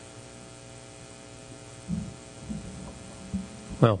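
Steady electrical mains hum, a low buzz with many overtones, picked up through the church sound system while the pulpit microphone stands open. A few soft low thumps come in the second half, and a man's voice starts just before the end.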